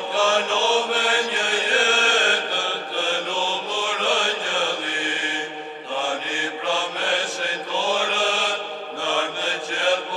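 Orthodox church chanting: sung liturgical chant in long, drawn-out melodic lines that glide between notes.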